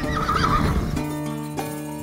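A horse whinnying once, a quavering call lasting about a second, over music with steady held notes.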